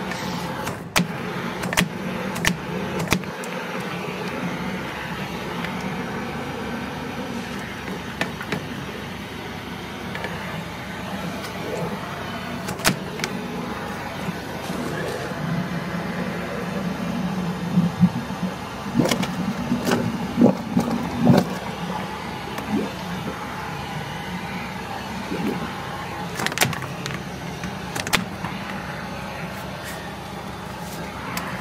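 High-pressure drain jetter running steadily while its hose works inside a blocked drain, with sharp knocks and clicks as the hose is pushed and pulled. The hose keeps catching where the drain pipe has shifted, a sign of a displaced drain that needs repair.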